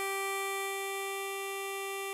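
A harmonica's G4 note, hole 7 blown, held as one long steady tone that eases slightly in level about half a second in.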